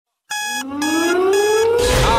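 Electronic music intro: an alarm-like synthesized beep pulsing three times, about half a second apart, over a rising synth sweep, with a deep bass beat coming in near the end.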